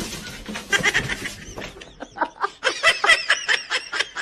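Someone laughing in a rapid run of short 'ha-ha' pulses, about six a second, starting about a second and a half in and running on.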